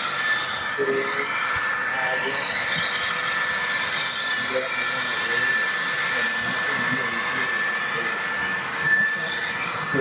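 HO-scale model train running on the track: a steady high motor whine with light, quick clicks of the wheels over the rail joints, a few a second.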